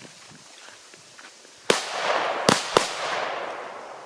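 Three Hestia 'Super Petardy' firecrackers going off with sharp bangs, the first about a second and a half in and two more in quick succession about a second later, each trailed by a rolling echo.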